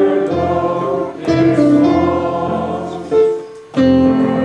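A hymn sung by voices to electronic keyboard accompaniment, with held chords that change about once a second and a short break near the end before the next phrase begins.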